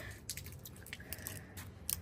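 Flarp noise putty squished and kneaded by hand, giving faint sticky squelches and small clicks but no fart noise.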